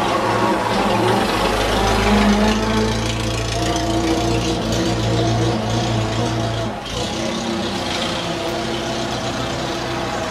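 Engine of a vintage Bullnose Morris car running at a steady idle, a low even throb with a deep undertone that drops away suddenly about seven seconds in.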